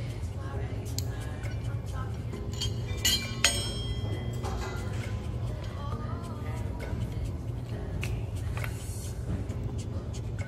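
Background music with a steady beat, and a sharp metallic clink and clank of cable-machine weight-stack plates a little after three seconds in.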